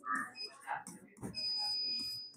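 A short high-pitched electronic beep about half a second in, then a steady high-pitched electronic tone starting just over a second in and held to the end.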